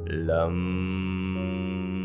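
One chanted "Lam", the bija mantra syllable of the root chakra, sung over a steady drone of background music. The syllable starts right at the beginning with a downward sweep in pitch and is then held.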